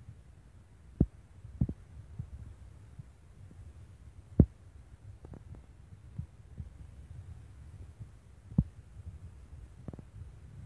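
Low, steady rumble with irregular thumps as a handheld phone is carried and handled while walking toward a waterfall. The loudest knock comes about four and a half seconds in.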